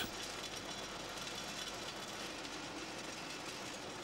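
Candy wrapping machine running slowly, giving a steady, even mechanical running noise.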